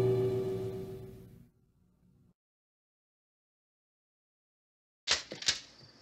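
Dark, sustained horror-film music with gong-like tones fades out over the first second and a half, leaving silence. About five seconds in come two sharp gunshots, about half a second apart.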